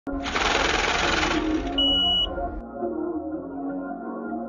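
Intro sound design for a title animation: a harsh, static-like noise burst with low rumble for about a second, a brief high beep, then soft ambient music with sustained tones.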